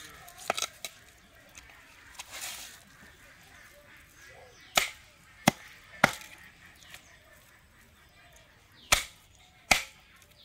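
Large wooden-handled chopping knife chopping raw chicken on a wooden block: short sharp chops at uneven intervals, a quick cluster about half a second in, three near the middle and two near the end.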